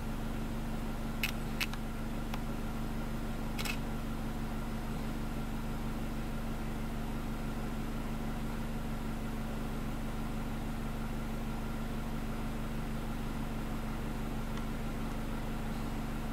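A car engine idling with a steady low hum, heard from inside the cabin, with a few faint clicks in the first few seconds.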